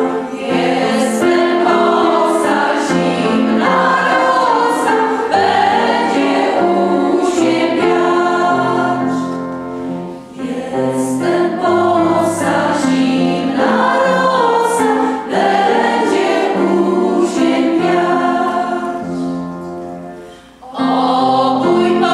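A women's choir singing together in sustained phrases, with two brief pauses between phrases, about halfway through and shortly before the end.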